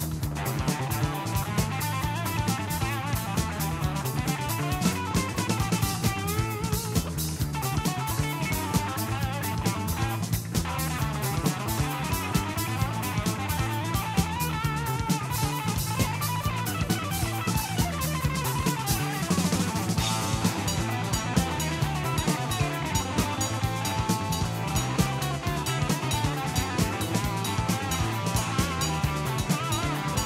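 Jazz-rock fusion recording playing loudly: electric guitar over a steady bass line and a busy drum kit with constant cymbal strokes. The cymbals grow brighter about two-thirds of the way through.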